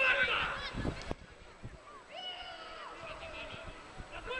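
High children's voices calling out, a sharp knock about a second in, then one long high shout that drops in pitch as it ends.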